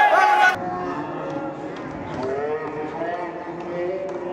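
Loud voices from the gym crowd, cut off about half a second in. What follows is the same live audio slowed down for a slow-motion replay: deep, long drawn-out voices that sound like mooing.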